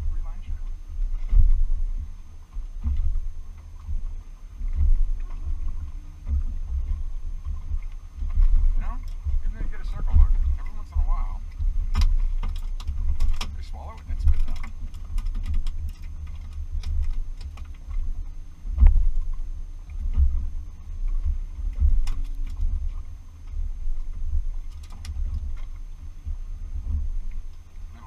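Gusting wind rumbling on the microphone and small waves slapping against the hull of an anchored boat, swelling and falling every second or two. A run of sharp clicks and rattles about halfway through as a fish is reeled in on rod and reel.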